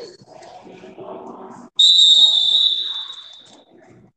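A whistle blown once in a long, steady, high-pitched blast that starts suddenly about two seconds in and fades away over nearly two seconds, over the murmur of voices in a gym.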